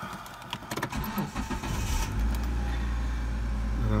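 Car keys rattling and clicking in the ignition of a 2003 Hyundai Santa Fe as the key is turned to the on position, followed by a steady low hum from about two seconds in.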